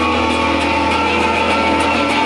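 Live garage-punk band's amplified electric guitars and bass holding a steady, droning sustained chord, with faint regular ticks from the drum kit.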